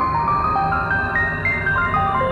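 Synthesizer music played live on hardware keyboards. A high, pure-toned lead melody of single notes climbs step by step and then falls back, over a dense, sustained low backing.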